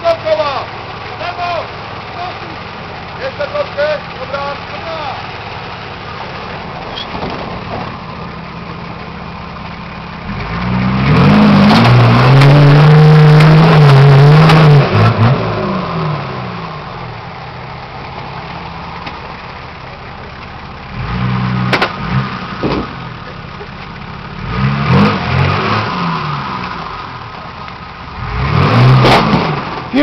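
Nissan Patrol Y60's 4.2-litre diesel engine running low and steady, then revved hard for several seconds about ten seconds in, its pitch rising and falling. Three shorter revs follow in the second half as the 4x4 is driven through steep off-road terrain.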